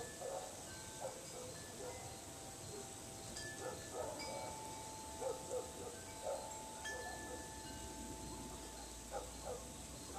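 Large metal tubular wind chime moved by the breeze, its clapper striking the tubes now and then at an irregular pace. Each strike starts long, overlapping ringing tones that hang on for several seconds.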